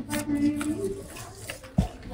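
Faint background voices with one soft thump near the end as a rug is handled and lifted.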